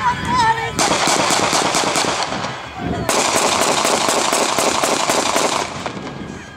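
Two long bursts of rapid automatic gunfire, each a quick run of sharp cracks, with a short break a little before the middle; shooting in the air in celebration of a wedding.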